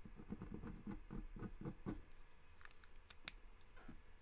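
Ink pen scratching across drawing paper in a quick run of short strokes, about five a second, for the first two seconds, then a few light clicks.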